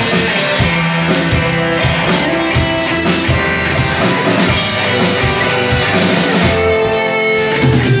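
Live rock band playing an instrumental passage: electric guitars over a drum kit, loud and steady, with no singing.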